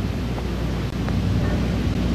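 A steady low rumble of background ambience with a faint hiss over it, and no other distinct event.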